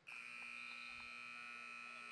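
Gym scoreboard buzzer sounding one long, steady electronic tone to end the first quarter of a basketball game.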